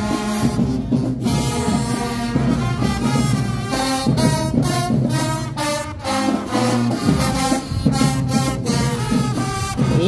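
High school marching band playing as it marches in: a brass section with sousaphones sounding held chords over a steady drum beat.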